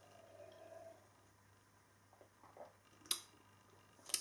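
Near silence while a man drinks beer from a pint glass: faint sipping sounds about half a second to a second in, and a single short sharp click about three seconds in.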